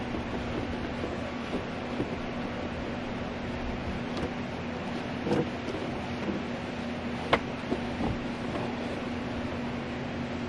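A steady mechanical hum with one constant low tone, with a few light clicks and knocks from hands working at a car's rear package tray; the sharpest click comes about seven seconds in.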